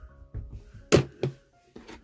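Small fabric-covered toy ball bouncing on a wooden tabletop: a sharp thud about a second in and a softer one just after.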